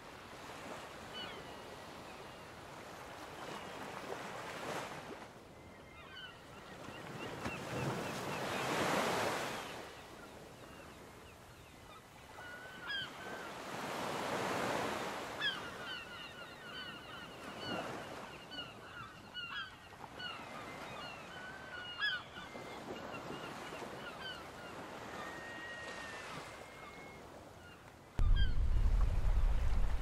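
Small sea waves washing onto the shore, swelling and falling every few seconds, with birds calling in short repeated calls through the middle. Near the end a sudden loud rush of wind hits the microphone.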